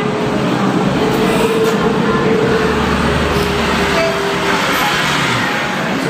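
Steady rumble of road traffic, with a low engine hum that swells in the middle.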